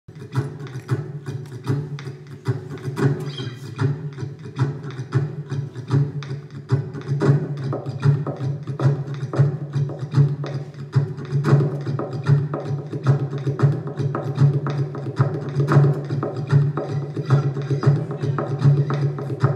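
Acoustic guitar played percussively, with sharp taps on the body and muted strums in a steady, fast rhythm over sustained low notes, layered with a loop pedal. It grows a little fuller about seven seconds in.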